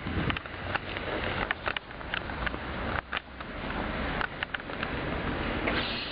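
Rustling with scattered light crackles, typical of footsteps on dry grass and fallen leaves, over a steady background rush.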